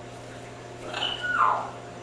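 Timneh African grey parrot giving one short two-part call about a second in: a higher note, then a lower note that slides down.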